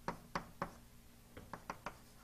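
Chalk tapping against a blackboard while a formula is written: short, sharp taps, three spaced out early on, then a quick run of four near the end.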